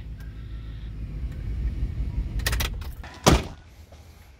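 Jeep Grand Cherokee WJ's driver door opening: a quick run of latch clicks, then one loud thunk about a second later.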